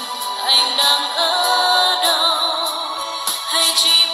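A woman singing a Vietnamese pop song into a microphone over a backing track, her held notes wavering in pitch.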